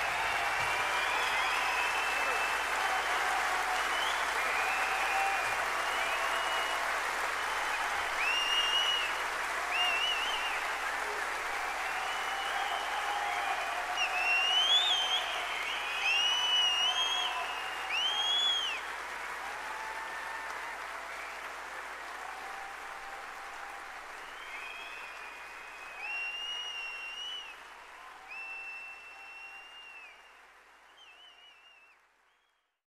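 Concert audience applauding after a song ends, with cheering and repeated whistles. The applause fades out steadily through the second half.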